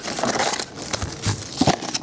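Plastic shrink wrap crinkling and a cardboard trading-card box being opened, with irregular rustles and a couple of sharper knocks near the end as the packs come out onto the table.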